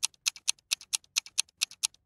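Ticking of a countdown-timer sound effect for a stopwatch: rapid, even ticks, several a second, alternating louder and softer like a tick-tock.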